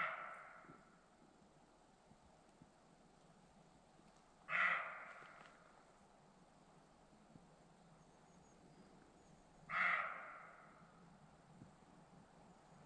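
An unseen wild animal calling three times, about five seconds apart, each call short and trailing off, in quiet pine woodland. It is unidentified even on the spot: wild boar, deer or bird all seem possible to the listener.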